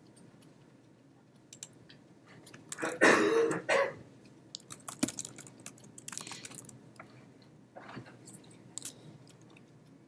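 A person coughs once, loudly, about three seconds in. After it come scattered clicks of typing on a laptop keyboard and mouse clicks.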